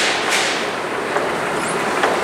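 Escalator running while being ridden down: a steady mechanical rattling hum, with two sharp clicks right at the start.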